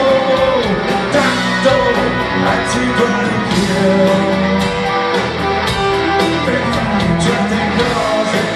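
Live rock band playing: electric guitars, bass and drums, with a steady beat of cymbal strokes.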